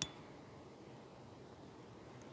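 A lighter struck once with a single sharp click and a brief metallic ring, lighting the cotton-ball tinder at the base of the kindling stack; after it only a faint steady hiss.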